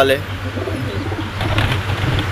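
Domestic pigeons cooing softly, with a steady low hum underneath.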